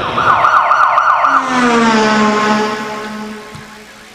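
Siren in a fast warbling yelp, about five cycles a second, then winding down in one long falling wail that fades out near the end.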